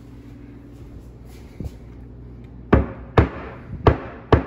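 Loose granite countertop slab knocking hard three times, about half a second apart in the second half, as it is lifted at its edge by hand and let drop back onto the base cabinet. It moves and knocks because it was never secured down to the cabinets.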